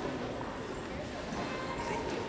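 Murmur of indistinct voices in a hall, with knocking footsteps of actors walking across a stage floor.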